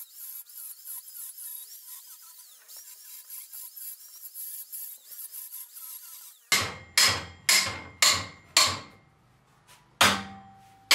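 Faint high-pitched grinding from an angle grinder working a steel beam. About two thirds of the way in, five loud hammer blows on steel follow, about two a second, each ringing briefly.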